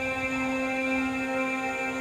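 Ambient background music: a single chord of steady tones held throughout.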